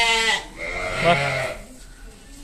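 A sheep bleating: one long call that ends about half a second in.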